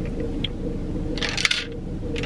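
Plastic shaker bottle handled and drunk from: a small click about half a second in, then a short clinking, rattling burst a little after a second, over a steady low hum.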